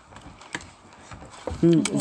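Quiet handling noise with a few light clicks, then a woman's voice starts speaking near the end.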